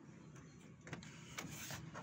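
Faint scattered clicks, with a short rustle about a second and a half in.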